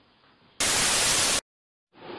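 A loud burst of white-noise static, just under a second long, starting about half a second in and cutting off abruptly into dead silence. It is a video-transition sound effect between two clips. Before it there is only faint hiss.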